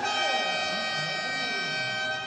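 A horn sounding one steady held note with bright, unchanging overtones for about two seconds, then cutting off suddenly.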